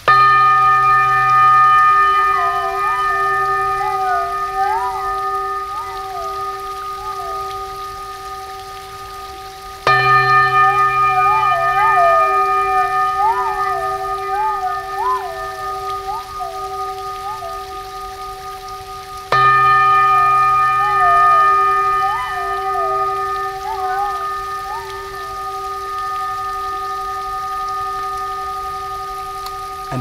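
Crystal singing bowl struck three times, about ten seconds apart, each strike ringing on in several steady tones that fade slowly. Wavering, gliding whistle-like tones rise and fall over the ringing for a few seconds after each strike.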